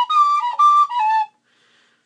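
A tin whistle playing a short run of a few high, clear notes that stops just over a second in.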